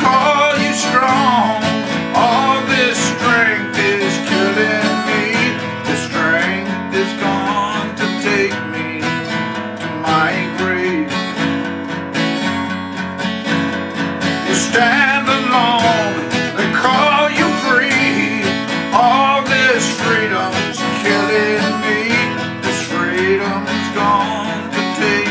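Acoustic guitar (Gibson) strummed and picked steadily in an instrumental passage of a country-folk song, with a bending, wavering melody line riding over it.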